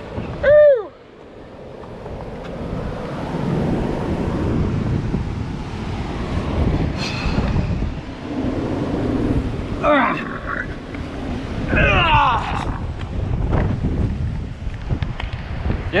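Wind buffeting the camera microphone as a steady low rumble that swells and stays up, with surf in it. A short falling cry about half a second in, and a few spoken words later on.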